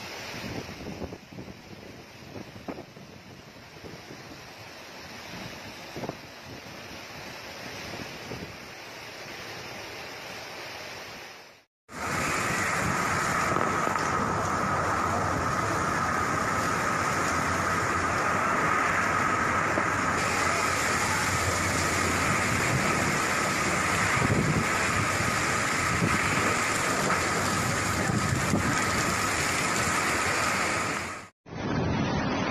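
Fast floodwater rushing in a typhoon, with wind, for about the first twelve seconds. After a sudden break it gives way to a louder, steady rush of typhoon wind and heavy rain, with a faint steady tone running through it.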